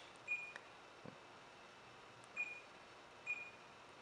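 Jensen VM9115 car DVD receiver giving touchscreen key beeps: three short, high beeps, each answering a tap on the screen. One comes just after the start and two come close together in the second half.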